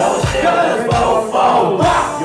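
Live hip-hop show: several rappers shouting and rapping together into microphones over a loud backing beat through the PA, with a heavy kick drum thumping a little more often than once a second.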